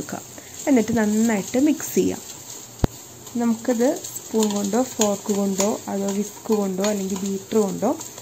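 A woman's voice talking, with a metal spoon stirring in a glass bowl underneath and one sharp click just before the middle.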